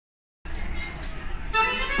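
Live dance band starting a song: an accordion plays the intro over light percussion taps about every half second, beginning about half a second in. The full band with bass and drums comes in loudly at the very end.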